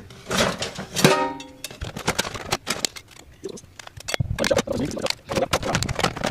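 Cooked lobster and crab shells clattering in a stainless steel sink as they are handled: a run of irregular clicks and knocks. A voice or music is heard briefly at the start.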